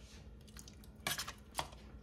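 A few light clinks and knocks from a stainless steel pot being handled on the stove, about a second in and once more a little after, over quiet kitchen room tone.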